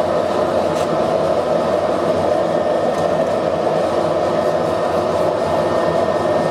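Blower-fed propane forge running: the burner flame and its electric blower fan make a constant rushing noise, even and unchanging throughout.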